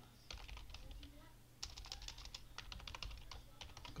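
Typing on a computer keyboard: a short burst of keystrokes, then after a brief pause a longer, rapid run of clicking keys.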